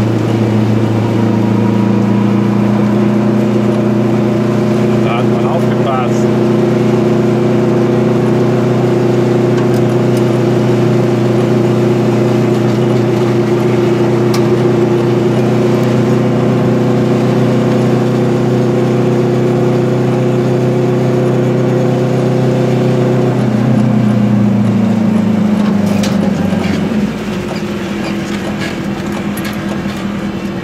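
Goggomobil's small two-stroke twin engine heard from inside the cabin, running steadily at cruising speed. About 24 s in, its note drops as the car slows, and it is quieter near the end.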